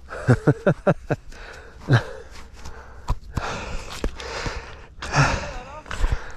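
A man laughing in a quick run of short bursts, then breathing hard between further laughs: out of breath after crashing his mountain bike.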